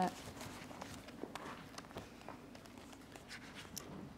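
Quiet room tone with a few faint clicks and light handling noises close to a desk microphone.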